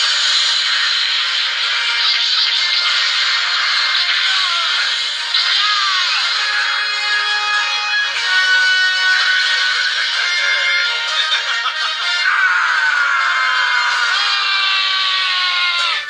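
Anime fight-scene soundtrack: dramatic music with sweeping sound effects, several falling swoops near the end. It comes thin and tinny through a television's speaker, with no bass.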